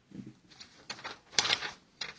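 Sheets of paper rustling as they are handled and leafed through, with a louder crackle about one and a half seconds in.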